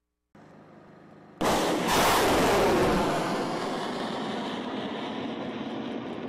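THAAD interceptor missile's solid rocket motor launching: a faint hiss, then a sudden loud blast about a second and a half in, followed by a sustained rushing roar that slowly fades.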